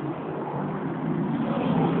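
A vehicle engine running and growing steadily louder, heard over street traffic.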